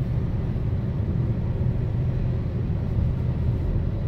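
Steady low rumble of a car's engine and tyres, heard from inside the cabin as the car climbs a mountain road.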